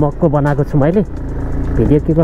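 A song with a man's singing voice, the line breaking off about halfway through and picking up again near the end, over a low steady rumble.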